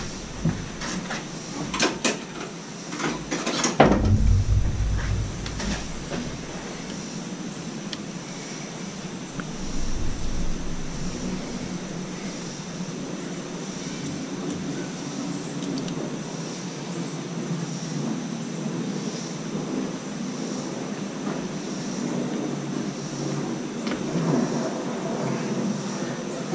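Screwdriver working on the metal brackets of a Mercury outboard powerhead. A few sharp metal clicks and knocks come in the first few seconds, then steady low scraping and handling noise as the brackets are pried.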